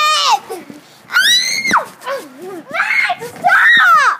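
Children screaming: three high-pitched shrieks, the longest about a second in, ending in a sharp fall in pitch, with lower vocal sounds between them.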